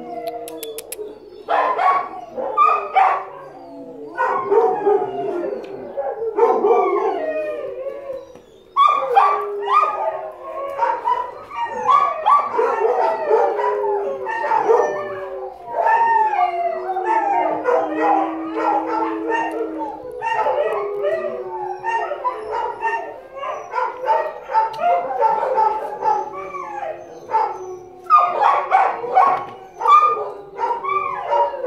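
Many shelter dogs howling, barking and yelping together in overlapping voices, with one long held howl about two-thirds of the way through.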